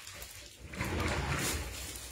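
Cloth rustling as a dark garment is handled close to the phone's microphone, a soft rustle lasting about a second.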